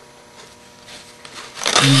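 Faint rustling and soft ticks of ribbon and paper being handled, low under a faint steady hum; a woman's voice starts near the end.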